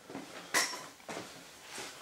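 Light clinks of small metal riveting tools being handled on a wooden workbench: a sharp clink with a short ring about half a second in, and a softer one about a second in.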